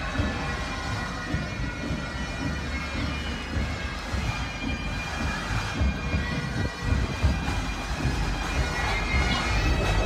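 Bagpipes of a marching pipe band playing held, steady notes, over a low rumble.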